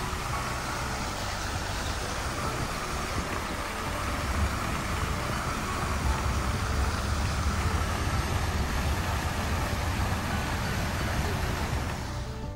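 Steady rush of water from a large fountain's jets splashing into its basin, with a low rumble underneath.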